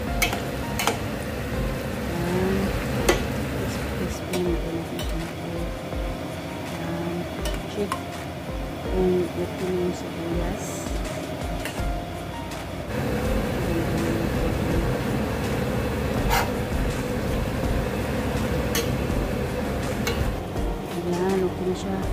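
Sliced onions deep-frying in a stainless steel pot of oil, sizzling steadily as they brown toward crisp. A metal skimmer stirs them, with occasional sharp clicks against the pot.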